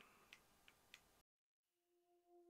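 Near silence: room tone with three faint, short clicks in the first second, then a moment of dead silence at an edit, and a very faint held tone starting near the end.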